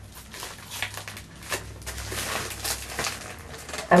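Scissors cutting into a padded plastic mailer bag: irregular crunching snips with crinkling of the plastic as the bag is handled.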